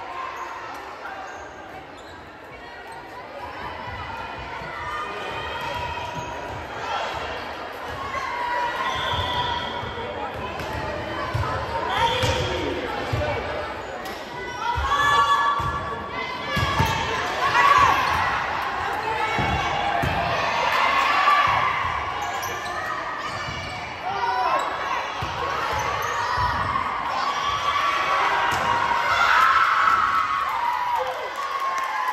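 Volleyball being struck and bouncing on a gym's hardwood floor, repeated thuds through a rally, with players' calls and spectators' voices around it, all echoing in a large gymnasium.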